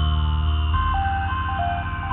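Electronic music: a simple high synth melody stepping between a few notes over a heavy pulsing bass, with a long high tone gliding slowly downward. A louder section with the bass comes in right at the start.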